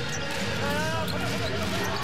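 A basketball dribbled on a hardwood court over the steady noise of an arena crowd.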